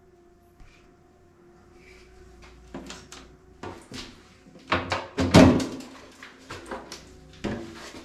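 A wooden door being pushed open and handled: a run of knocks and scrapes from about three seconds in, with a louder clatter near the middle.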